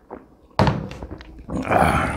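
A drinking glass set down on a wooden table with a thunk about half a second in. Near the end comes a louder, longer scraping clatter of a metal fork against a ceramic plate.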